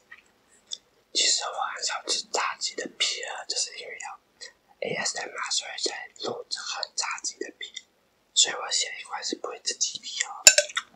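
Close-miked whispering by a young man, in three stretches of several seconds with short pauses between.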